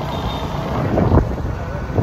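Wind buffeting the phone's microphone on a moving motorbike taxi, over a low rumble of road and traffic noise, with a louder gust about a second in.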